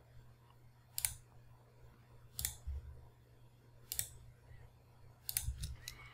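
Faint single clicks on a computer: one about every second and a half, then several quick clicks near the end, over a low steady hum.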